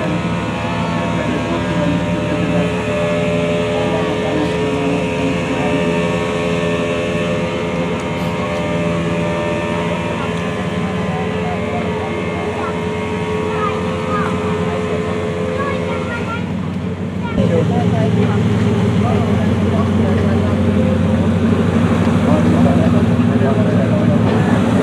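Motor rescue boat engines running with a steady hum. About seventeen seconds in, the engine sound turns abruptly louder and deeper.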